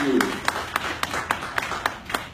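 Scattered clapping from a small audience at the end of a song, individual claps heard distinctly and irregularly.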